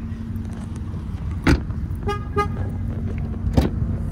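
Car handling sounds over a steady low hum: a sharp knock, then two short tones in quick succession, then a second knock.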